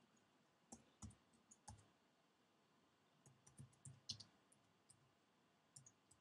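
Faint keystrokes on a computer keyboard: a few separate key clicks about a second in, then a quicker run of them from about three seconds in, and more near the end.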